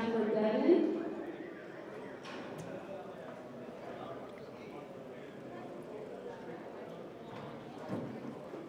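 Horses stepping and shifting on soft arena dirt, faint hoof steps over a low steady background.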